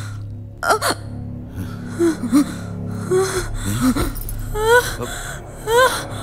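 A woman gasping sharply for breath and whimpering in distress, with short rising cries near the end, over a low, steady drone of dramatic film score.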